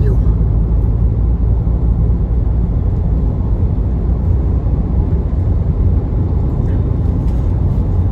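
Steady low rumble of a 2015 Range Rover Evoque being driven, heard from inside the cabin.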